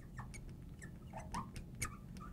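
Faint squeaks and small clicks of a marker writing a word on a glass lightboard: a string of short, squeaky chirps with light taps between them.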